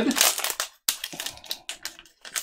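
Foil Magic: The Gathering booster pack wrapper being torn open and crinkled by hand: a quick, irregular run of crackles and small clicks, with a brief break just before a second in.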